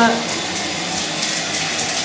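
Water falling steadily from a wall-mounted waterfall spout onto the bottom of a bathtub as it begins to fill.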